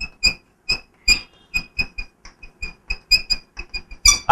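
Chalk squeaking and tapping on a blackboard as it writes: a quick run of short, high squeaks, about four or five a second.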